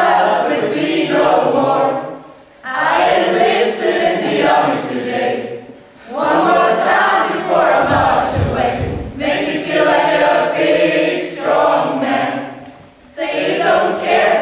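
A group of voices singing together as a choir, in phrases with short breaks between them.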